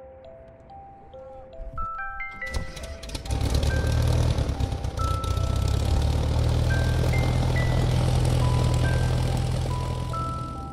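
Single-engine light aircraft's piston engine sputtering into life about two seconds in, then running with a loud steady drone. Soft background music with mallet notes plays throughout.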